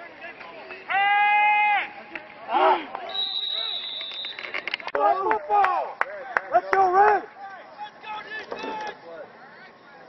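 Football players and coaches yelling from the sideline during a play, with one long held shout about a second in and a burst of shouting from about five to seven seconds. A referee's whistle sounds one steady blast of about a second, starting around three seconds in.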